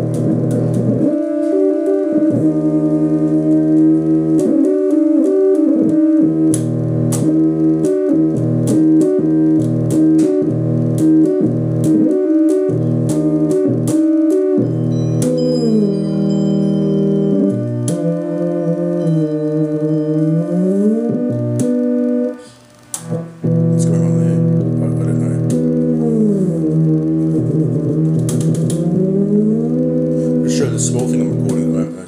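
Homemade two-string analog guitar synthesizer being played: sustained buzzy synth notes, several sliding up or down in pitch, with scattered sharp clicks. The sound cuts out briefly about two-thirds of the way through before resuming.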